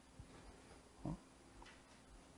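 Near silence with a faint steady hum. About a second in there is one short, low, grunt-like sound from the speaker's voice.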